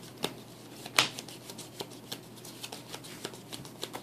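Trading cards being handled on a table playmat: a run of light clicks and taps as cards are slid, picked up and set down, with a sharper snap about one second in.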